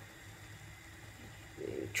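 A quiet pause holding only a faint, steady low hum of room tone. Near the end there is a short, low vocal sound just before talking resumes.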